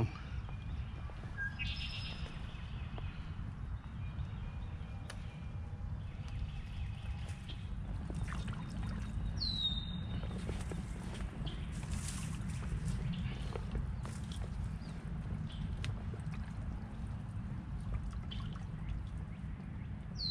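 Waders sloshing and splashing through shallow pond water as a person wades in, with scattered small splashes and clicks. A few short bird calls, among them one falling whistle about halfway through.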